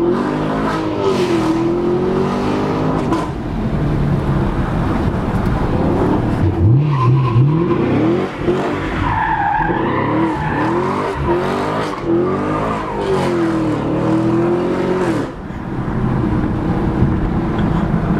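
Chevrolet Camaro SS's V8 engine heard from inside the cabin, revving hard with its pitch rising and falling again and again as the car is driven aggressively through the gears.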